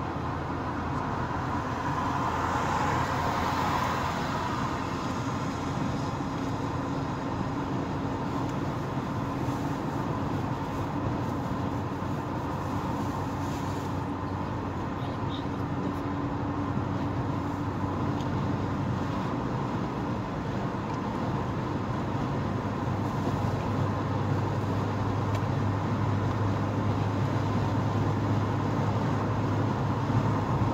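Steady road and engine noise of a car driving at speed, heard from inside its cabin, with a low hum that grows a little louder in the last third.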